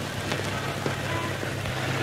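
Steady hiss with scattered faint crackles over a low hum, gradually growing louder.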